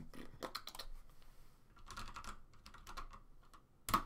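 Typing on a computer keyboard: irregular runs of key clicks entering a calculation, with one louder click just before the end.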